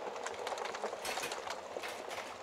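Crackling fire: a steady soft hiss broken by frequent irregular snaps and pops.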